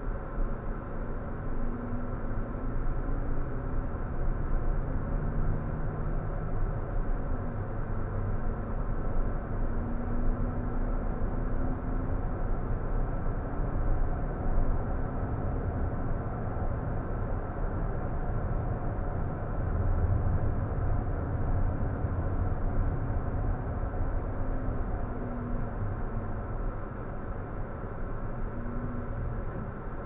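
Intercity coach running along a highway, heard from the driver's seat. A steady low engine drone and road rumble, with the engine note shifting a little as the speed changes.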